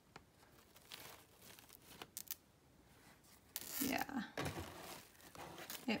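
Faint handling noise with a few light clicks as a flower clip is worked onto the edge of a foam-covered acrylic frame.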